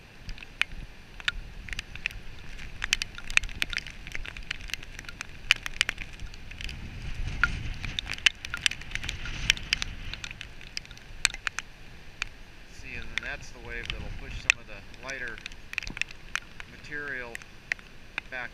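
Rain drops ticking sharply and irregularly on the camera over the steady wash of heavy surf and wind; the low rumble of the surf swells up about halfway through and again shortly after.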